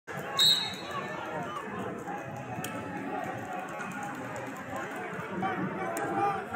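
A referee's whistle sounds one short, high blast about half a second in, starting the wrestling bout. Around it runs a steady hubbub of many voices in a large hall, with one sharp click a couple of seconds later.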